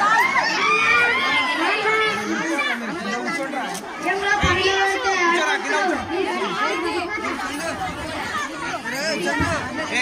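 Mostly speech: a child's voice speaking through a microphone over a loudspeaker, with chatter from a crowd.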